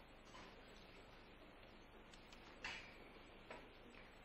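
Near silence, with a few faint clicks and a short rustle about two and a half seconds in, then a smaller one near the end, as a sheathed Japanese sword is handled by a kneeling swordsman.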